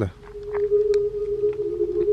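A steady low drone of two close tones held together, starting just as the talk stops, with a few faint clicks over it.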